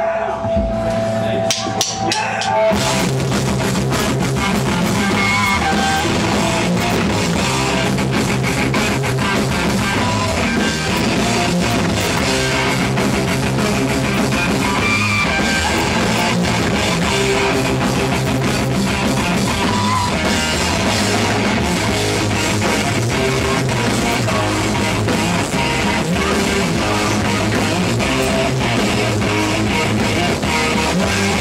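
Live heavy metal band: a few sharp clicks, then distorted electric guitars, bass and drum kit come in together about two and a half seconds in and play on at a steady full volume.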